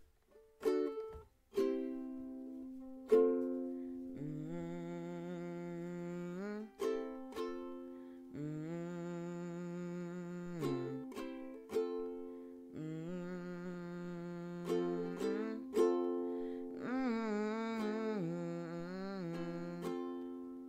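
Ukulele strumming and plucking an instrumental passage, with a wordless voice humming four long, wavering phrases of about two seconds each over it.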